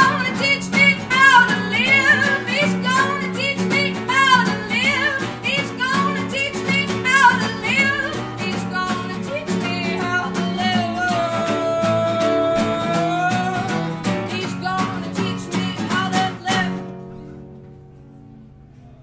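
Live unplugged rock song: a woman sings with vibrato over strummed acoustic guitar, holding one long note near the middle. About three-quarters of the way through, the strumming stops on a last chord that rings out and fades.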